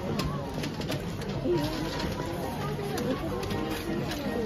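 Wrapping paper rustling and creasing as it is folded around a gift box, with scattered light taps. Background chatter of several voices and music run underneath.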